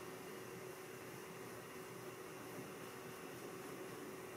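Faint steady background hiss with a low, even hum: room tone, with no distinct brush strokes.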